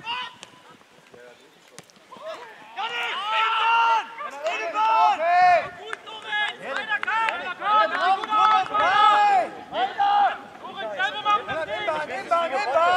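Raised voices shouting across an outdoor football pitch, loud, high-pitched calls rising and falling one after another from about three seconds in, after a quieter start.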